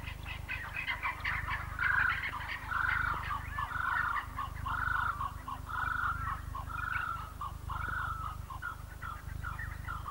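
Bush birdsong: a busy scatter of short chirps, with one bird repeating a rising-and-falling call about once a second, seven times, fading out near the end.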